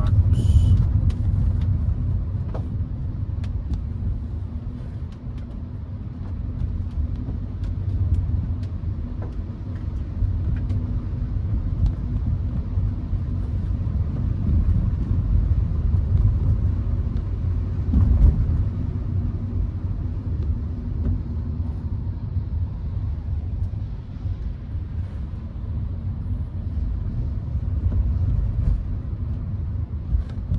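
Cabin noise of a Hyundai HB20 1.6 automatic creeping through city traffic on a wet road: a steady low rumble of engine and tyres, with one louder thump about eighteen seconds in.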